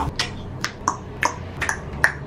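A run of about seven sharp, unevenly spaced snapping clicks.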